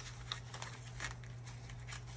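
Paper banknotes rustling and crinkling softly as one-dollar bills are gathered and squared into a stack by hand, in a few short, faint bursts.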